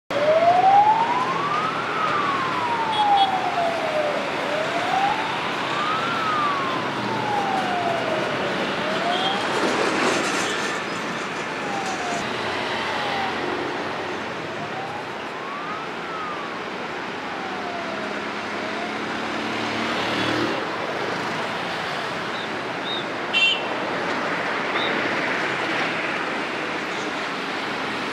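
Emergency-vehicle siren wailing, slowly rising and falling about once every four seconds, over steady road-traffic noise. The wail fades out about halfway through and comes back briefly. A short sharp knock sounds near the end.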